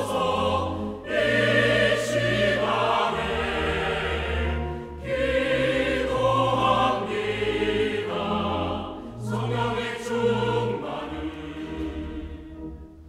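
Mixed church choir singing a Korean sacred anthem in full harmony, in phrases with a short break about every four seconds, over low sustained accompaniment.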